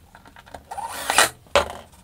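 Cordless drill-driver run briefly, a short burst with a rising motor whine as it spins up, about a second long. A sharp knock follows half a second later.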